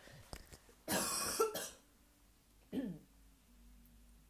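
A woman coughing: one harsh cough about a second in, lasting under a second, then a short throat clear near three seconds.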